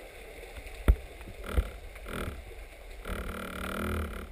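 Muffled underwater sound picked up through a camera housing: a low rumble, a sharp knock about a second in and a softer one after it, then a short pitched sound near the end.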